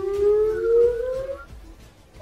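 Outdoor tornado warning siren, its tone rising steadily in pitch, then cutting off about a second and a half in.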